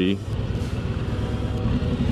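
Harley-Davidson Road Glide's Milwaukee-Eight 117 V-twin running steadily under way, a low even rumble with road and wind noise.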